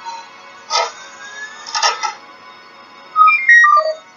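Electronic sound effects from an animated cartoon's soundtrack: two short noisy bursts, then near the end a quick run of beeping tones that step down to a low note.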